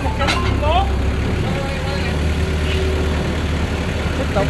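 Yanmar TF160 single-cylinder horizontal diesel engine running steadily with an even low throb.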